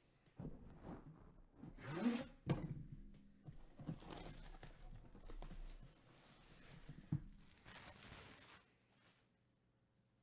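Cardboard box being handled and opened: rustling and scraping of cardboard with a few knocks. The loudest scrape is about two seconds in, with a sharp knock just after it.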